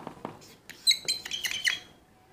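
Dry-erase marker squeaking on a whiteboard as a word is written: a couple of light taps, then about a second of short, high-pitched squeaky strokes.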